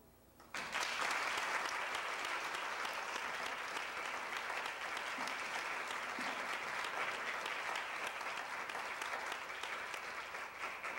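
An audience starts applauding about half a second in, right after a charango piece has ended, and keeps clapping steadily.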